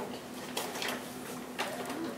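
A few short rustles and clicks of a plastic bag of shake powder being handled as powder is scooped out of it, three in all, over a steady faint hum.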